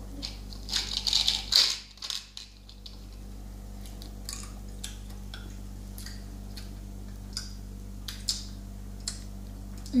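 Jelly beans rattling and clicking against a small glass jar as a hand rummages through them in the first two seconds. Then a steady low hum with a few faint clicks.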